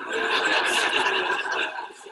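A large audience laughing together, a dense burst of many voices that dies away near the end.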